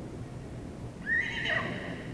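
Welsh pony whinnying once, a high call about a second long that starts about a second in, rising at first and then wavering in pitch.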